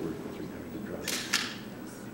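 Two quick still-camera shutter clicks about a second in, a quarter second apart, the second sharper and louder, over a low murmur of voices.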